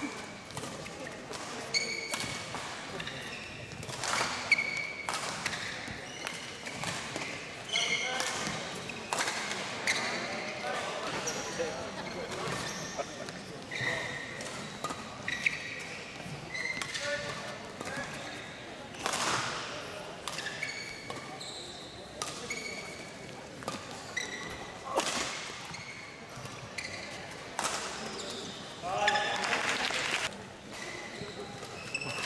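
Badminton rallies: rackets striking the shuttlecock in sharp cracks at irregular intervals, mixed with short high squeaks of shoes on the court mat.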